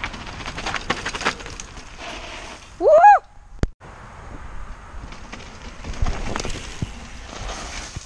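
Mountain bike riding down a dirt trail: steady rushing tyre and wind noise on the camera's microphone, with clattering rattles from the bike over rough ground. A short loud shout, rising then falling in pitch, comes about three seconds in, and the sound drops out briefly just after.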